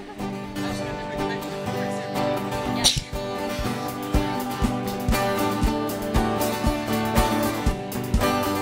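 Church band music starting up, with held notes from the outset and a steady low beat of about two thumps a second joining about halfway through.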